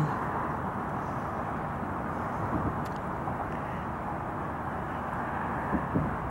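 Steady hum of distant road traffic: an even, low rush with no separate events standing out.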